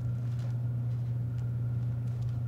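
A steady low hum over quiet room tone.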